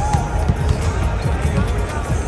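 Basketballs bouncing on a hardwood court, in repeated low thumps, over music and crowd chatter.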